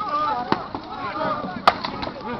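Two sharp weapon strikes in armoured melee combat, one about half a second in and a louder one near the end, over the shouting voices of fighters and onlookers.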